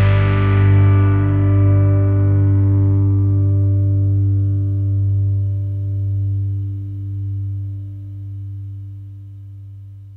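A distorted electric guitar and bass chord left ringing out as the last chord of a rock song, dying away slowly, the high overtones fading first until mostly the low notes remain.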